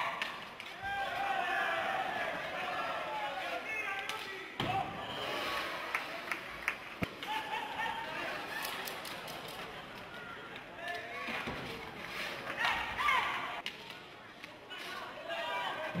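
Live rink-hockey game sound: players calling out, with several sharp knocks of sticks striking the hard ball and the ball hitting the boards.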